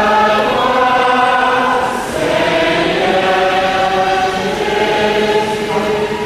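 A choir singing in long held notes, a brief break about two seconds in: the sung acclamation that answers the Gospel reading at Mass.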